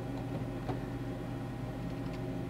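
Steady low background hum with faint hiss, room tone picked up by the microphone, with one faint click about two-thirds of a second in.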